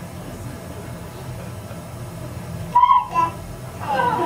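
A short, high-pitched vocal sound about three seconds in, over a steady low hum.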